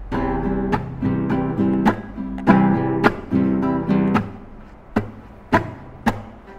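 Acoustic guitar strummed in chords, the ringing cut off by sharp percussive chops about once a second. The strings are muted hard to make the "chặt" (string chop) effect.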